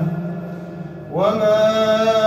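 A man's voice chanting Quran recitation in the melodic tajwid style. A held note fades away over the first second, then a new phrase begins about a second in, gliding up and settling on a long sustained note.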